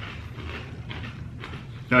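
Kettle-style potato chips being chewed: a few short, irregular crunches. A man starts speaking near the end.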